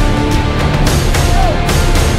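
Loud, driving background music with a steady beat.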